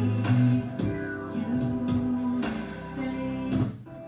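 A recorded music track playing back through studio speakers. It cuts off suddenly near the end, where the computer stops the playback.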